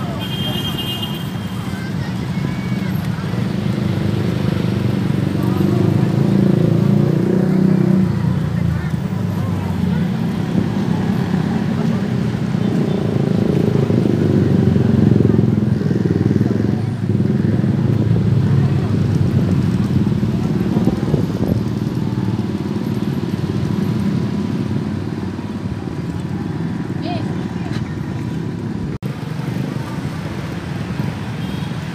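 Small outboard motors on inflatable rescue boats running on the water, mixed with the indistinct chatter of a crowd. The sound swells in the middle and eases near the end.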